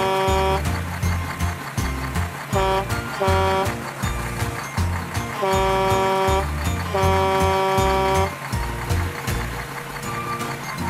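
Upbeat background music with a pulsing bass beat, over which a cartoon horn toots at one steady pitch: a honk ending just as it starts, a quick double toot about three seconds in, then two longer honks around five and a half and seven seconds in.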